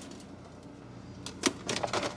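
Plastic food containers knocking and clicking against each other and the refrigerator shelves as one is pulled out: a few sharp knocks in the second half, over a low steady hum.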